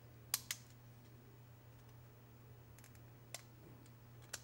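A steel piston ring clicking against the piston as it is worked into its groove by hand: two sharp clicks early, then a few faint ticks, over a low steady hum.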